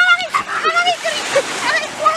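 Small waves washing and splashing at the water's edge, with high-pitched voices calling out over them.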